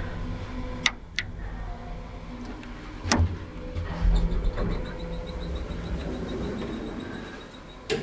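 Old Teev traction elevator running with a low, steady hum and a few sharp clicks in the first three seconds. From about four seconds in, a high beep pulses about six times a second, and it stops just before another click near the end.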